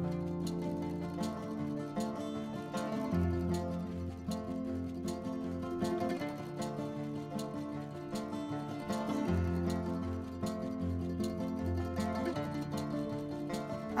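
Background music: a light instrumental tune with a steady beat and a moving bass line.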